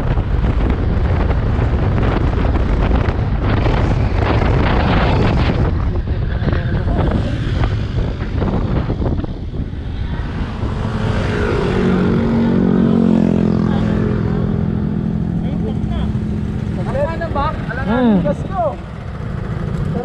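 A Yamaha scooter riding along, with wind rushing over the microphone and road noise for the first half. It then slows to a stop, and a steady engine hum comes in. A brief shout from a voice is heard near the end.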